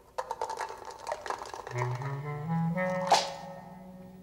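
Dice rattling and clattering in a quick run of clicks, then music comes in: low held notes stepping upward and a single sharp struck accent about three seconds in.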